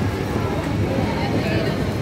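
Steady wind rumble on the microphone with faint voices in the background.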